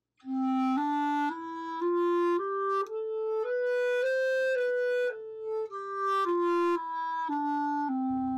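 A clarinet plays a one-octave scale of held notes, each about half a second long, stepping up to the top note near the middle and then back down to the starting note.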